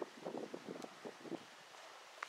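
Faint, brief crackles and rustles of dry leaf litter during the first second or so, over a light hiss of wind.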